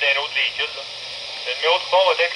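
Transit bus radio traffic on an EDACS trunked system heard through a handheld scanner's speaker: a voice talking in thin, narrow radio audio, with a short lull in the middle.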